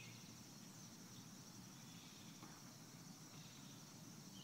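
Near silence: faint background with a steady high-pitched drone, likely insects such as crickets.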